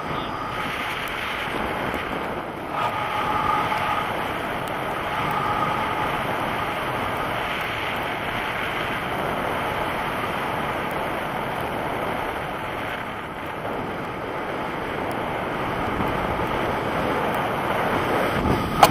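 Steady rush of wind over a handheld action camera's microphone as a tandem paraglider flies, a constant airflow noise with slight swells and no engine.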